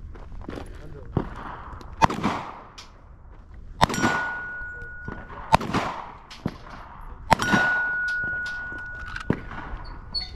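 Four loud gunshots about two seconds apart, each trailing off in a long echo, with fainter sharp cracks between them. A steady metallic ringing tone lingers for a second or two after the second and fourth shots.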